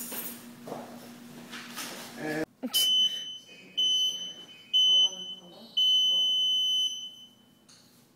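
Digital gym interval timer beeping a start countdown: three short high beeps about a second apart, then one longer beep, signalling the start of a timed workout.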